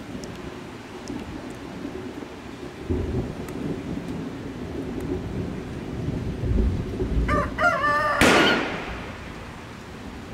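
Low rolling thunder builds from about three seconds in. Near the end a rooster crows, and the crow is cut off by a loud burst of noise that fades out over about a second.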